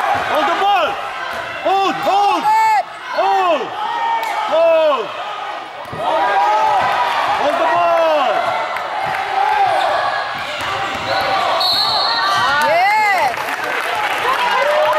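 Basketball shoes squeaking on a hardwood gym floor: many short squeals that rise and fall in pitch, in clusters, with the ball bouncing and voices from the gym around them.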